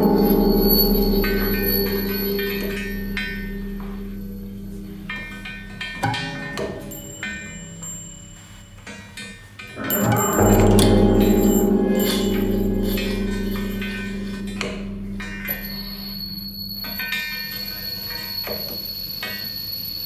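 Large steel cauldron ringing in an improvised performance: two deep, bell-like strokes about ten seconds apart, each ringing on with several held tones that slowly fade, with lighter knocks and clinks between.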